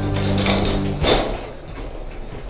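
A rolling scaffold tower being pushed on its caster wheels across the floor, its metal frame rattling, with a louder knock about a second in. The last sustained notes of background music fade out in the first second.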